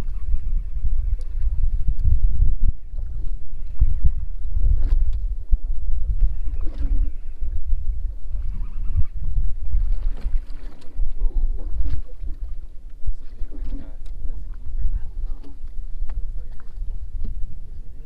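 A steady, fluctuating low rumble of wind and water against a small aluminium fishing boat drifting at sea, with faint scattered knocks and rattles on board.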